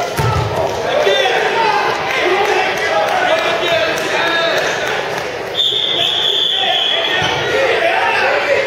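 Several voices shouting and calling out over a wrestling bout in a large echoing gym, with a low thud of bodies hitting the wrestling mat right at the start as a takedown lands. A steady high tone sounds for about a second and a half a little past the middle.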